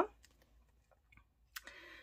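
Near quiet with a few faint clicks and a soft rustle near the end as a stitched paper bookmark is turned over in the hands.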